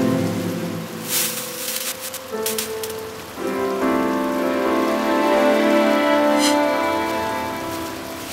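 String ensemble of violins, violas, cellos and double basses holding slow sustained chords, moving to new chords about two and a half and three and a half seconds in, with the sound of rain falling underneath.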